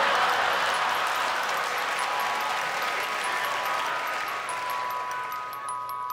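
Audience applause after a stand-up punchline, fading away over about five seconds, while held musical tones come in over it and grow louder toward the end.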